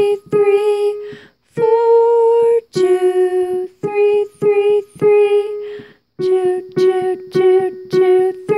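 Digital piano playing a slow beginner melody on the three black keys (F♯, G♯, A♯), short notes often repeated three at a time with two brief pauses. A voice sings the finger numbers along with the notes.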